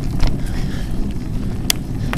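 Mountain bike rolling over a dirt-and-gravel trail, with a steady low rumble of tyres and wind buffeting the microphone, and a sharp click or rattle from the bike near the end.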